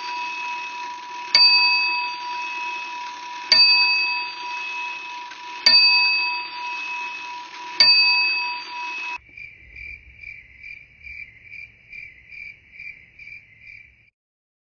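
A bell-like chime struck four times, about two seconds apart, each strike ringing on and fading over a low steady hum, until it cuts off suddenly about nine seconds in. Then a softer high chirping tone pulses about two and a half times a second.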